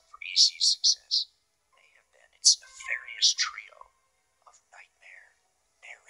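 A person whispering in short, breathy, hissing bursts, with brief pauses between phrases.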